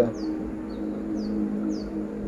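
Small bird chirping repeatedly, short high notes that fall in pitch, about two a second, over a steady low hum.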